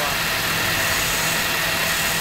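Electric wood lathe running at a steady speed, a steady motor hum, while a hand-held chisel cuts shavings from a small spindle.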